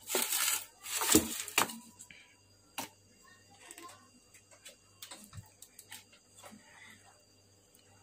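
Hands handling things on a workbench: a few scraping, rustling bursts in the first two seconds, then scattered small clicks and faint handling sounds over a low steady hum.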